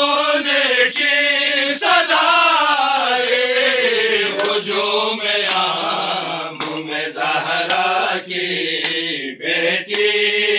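A group of men chanting an Urdu noha (Shia lament) together without instruments, the voices held in long, wavering notes.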